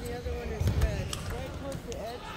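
A table tennis ball clicking sharply back and forth between paddles and table during a rally, several quick clicks at uneven spacing, over the chatter of voices in a busy hall.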